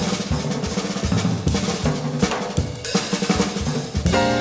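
Jazz drum kit playing a solo break: rapid snare strokes and rolls mixed with bass drum hits and rimshots.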